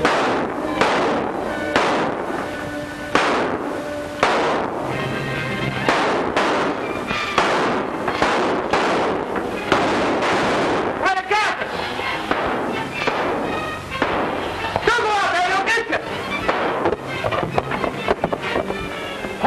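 Repeated gunshots, roughly one a second, each with a ringing tail, in a gunfight over an orchestral film score.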